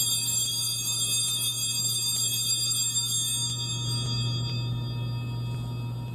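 Altar bells (sanctus bells) rung at the elevation of the chalice during the consecration: a cluster of small, high-pitched bells shaken in a series of strikes. The ringing dies away near the end.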